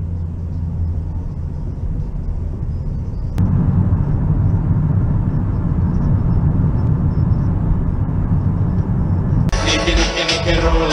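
Steady low rumble of road and engine noise inside a moving car's cabin, stepping up louder about three seconds in. Near the end it cuts suddenly to loud live rap music.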